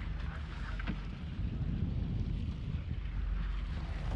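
A boat's motor running with a low steady hum, under wind noise on the microphone.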